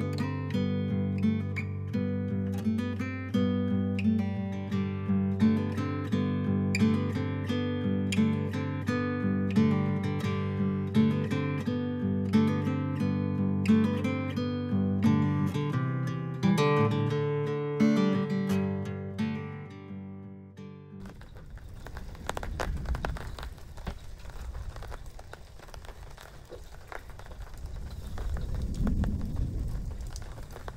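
Acoustic guitar background music that stops about two-thirds of the way through. Rain is then heard falling, growing louder near the end.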